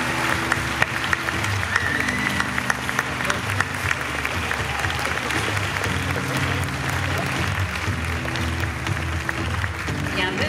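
An audience applauding steadily over music with sustained low notes.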